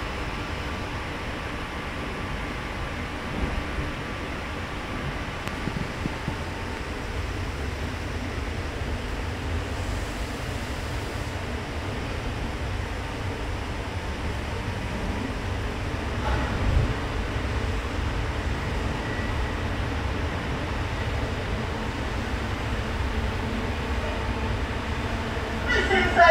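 Steady rumble of a passenger train running, heard from inside the carriage, with a faint whine that fades out about six seconds in and a single short knock about two-thirds of the way through.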